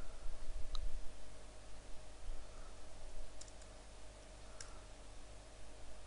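A few sharp clicks of computer keys and mouse buttons: one about a second in, a quick little cluster around three and a half seconds, and the loudest near five seconds. Under them runs a steady low background hum.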